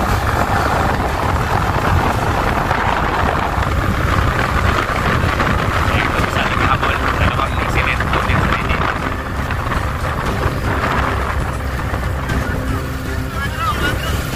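Motorcycle running steadily at road speed, its engine hum mixed with a rush of wind on the microphone.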